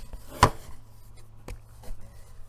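A sharp knock about half a second in, then two fainter clicks, as makeup products such as a compact palette are handled and set down, over a low steady hum.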